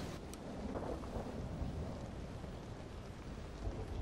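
Storm ambience: a steady low rumble of thunder under the hiss of rain.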